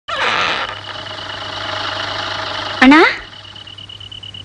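Sewing machine running steadily, stopping about three seconds in as a voice calls out "Anna?" with a rising pitch.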